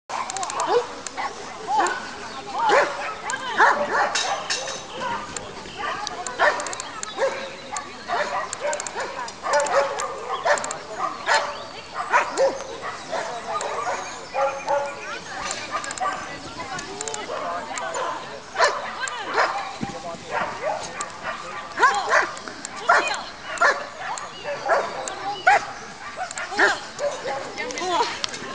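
A dog barking in short, repeated barks during an agility run, while a handler calls out.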